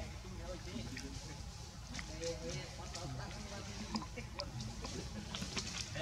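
Voices of people talking in the background over a steady low rumble, with scattered small clicks.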